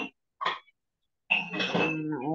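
A person coughing briefly, in short noisy bursts with dead silence between them, heard through a video-call microphone; a voice starts up near the end.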